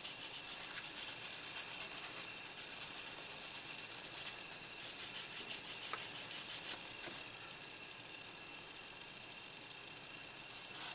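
Soft sanding sponge stick rubbed back and forth over the plastic model's tail tip in quick strokes, several a second. It is smoothing and rounding off cured super glue used as seam filler. The strokes pause briefly about two seconds in and stop about seven seconds in.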